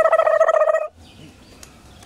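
A loud call held on one steady pitch with a fast flutter through it, cutting off suddenly about a second in.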